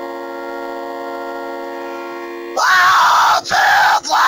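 A steady, held keyboard chord, cut off about two and a half seconds in by much louder yelling: two shouts with a brief break between them.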